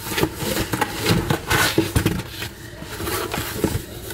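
A cardboard shipping box being opened by hand: its flaps folded back and the box handled, giving irregular rustling, scraping and light knocks.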